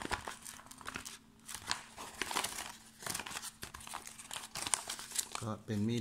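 A paper survival-guide leaflet rustling and crinkling in short, irregular bursts as it is handled. Speech begins near the end.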